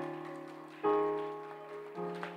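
Keyboard chords played softly: a new chord is struck about a second in and another near the end, each ringing and fading away.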